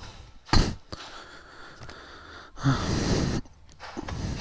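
A man's short breathy 'huh', a voiced exhale, about two and a half seconds in, after a brief sharp noise about half a second in.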